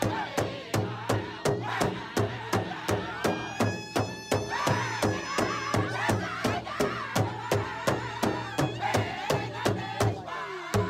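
Powwow-style drum beating steadily at about three beats a second, with singers chanting a jingle dance song above it in high, wavering lines.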